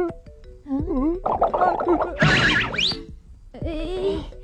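Cartoon soundtrack: light background music under wordless character cries and grunts, with a noisy scramble and a quick, sharply rising sound effect about halfway through.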